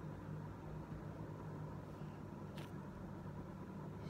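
Steady low background hum, with a single faint click about two and a half seconds in.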